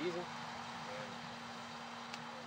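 A man's voice finishing a word at the very start, then a pause filled by a steady low hum and an even background hiss.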